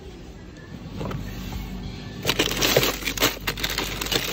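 Plastic bags of frozen food crinkling and knocking together as they are handled and packed into a chest freezer, with a dense burst of crackling from about two seconds in.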